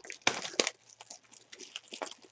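A sealed Select AFL Footy Stars 2021 trading-card box being torn open by hand: crinkling plastic wrap and tearing cardboard, loudest about half a second in, then smaller crinkles.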